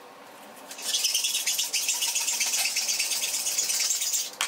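Hand hacksaw sawing in rapid back-and-forth strokes. The scraping starts about a second in and keeps on steadily.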